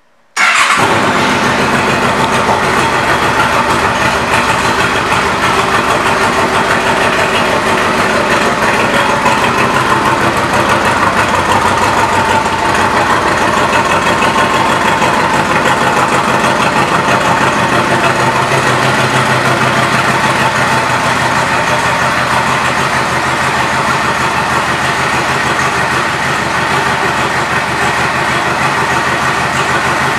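Yamaha Royal Star Tour Deluxe's V-four engine starting about half a second in, then idling steadily through an aftermarket exhaust.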